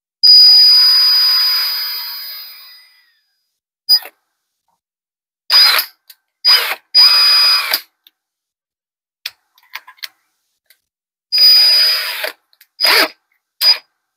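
Cordless drill with a high motor whine: a first run of about three seconds, boring through soft pumpkin flesh, that winds down, then several short trigger pulls.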